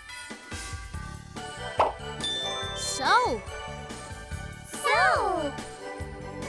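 Cheerful children's background music with tinkling chime notes, a short pop about two seconds in, and two short calls that glide downward in pitch, about three and five seconds in.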